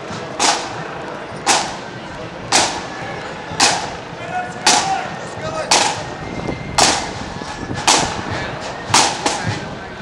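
Marching band drums beating time with a single sharp stroke about once a second, with no flutes playing. Crowd chatter runs underneath.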